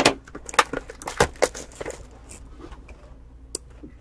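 A cardboard trading card box being handled and turned over in the hands: a run of sharp crackles and clicks over the first two seconds, then quieter rustling with a few faint ticks.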